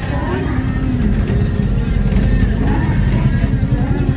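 Steady low rumble and rattle of an odong-odong, a small open trolley-train on wheels, running along a road; the rear car gives a bumpy, wobbly ride. Faint voices sound behind it.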